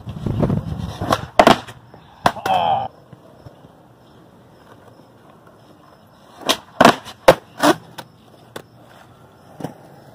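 Skateboard wheels rolling on concrete, with two clusters of sharp clacks of the wooden board and tail striking the ground, one about a second in and another about six and a half seconds in, as a 360 varial finger flip is done. The landing has a big tail scrape, the tail dragging on the ground because the last part of the spin is only a pivot.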